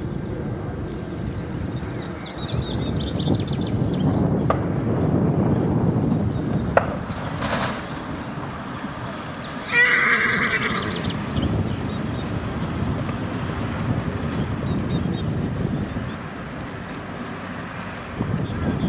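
A horse whinnies once, loud and about a second long, roughly ten seconds in, over a steady low rumble.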